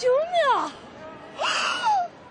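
A young woman's voice exclaiming in astonishment, high-pitched with sweeping rises and falls, then about one and a half seconds in a short, breathy, surprised cry.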